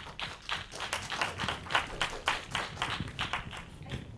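A small audience applauding, many separate hand claps overlapping unevenly, dying away at the end.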